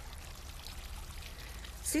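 Small garden fountain, water splashing and trickling steadily.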